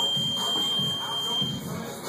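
A single high, steady beep lasting about a second and a half, over background music with a steady beat.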